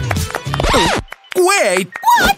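Cartoon voice acting: short wordless vocal sounds, one about half a second in and a longer, wavering one about a second and a half in. The music ends at the start under a quick rasping rattle.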